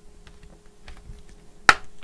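Fingers working at a plastic clip on a laptop display assembly: small faint ticks of plastic handling, then one sharp click near the end.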